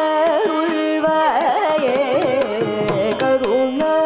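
Carnatic vocal music: a woman singing with sliding, ornamented pitch, a violin following her melodic line, sharp mridangam strokes, and a steady tanpura drone underneath.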